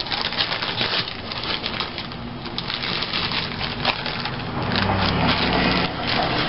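Plastic zip-top bag crinkling and rustling as hands rummage through the loose embellishments inside it, a dense run of small crackles.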